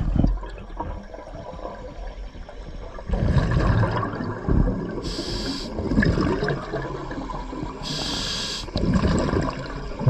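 Scuba diver breathing through a regulator underwater: rumbling, gurgling exhaled bubbles, and two short hisses of the demand valve on inhaling, about five and eight seconds in.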